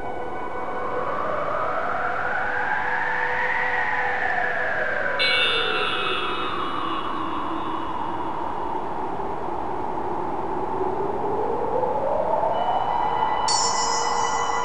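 Electronic ambient soundtrack: a synthesized tone sweeps slowly up and down like a siren over sustained drone notes. Bright chiming high notes enter suddenly about five seconds in and again near the end.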